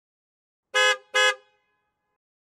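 A vehicle horn giving two short, identical honks in quick succession, beep-beep, about a second in, against dead silence.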